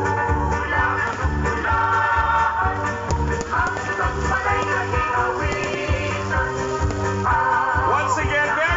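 Loud music with a steady beat and a melody playing throughout.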